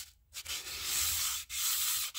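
Emery cloth, wetted with WD-40, rubbing around a crankshaft journal as a paracord wrapped over it is pulled back and forth: a hissing rasp in strokes about a second long, with a brief pause just after the start and a short break about halfway as the stroke reverses.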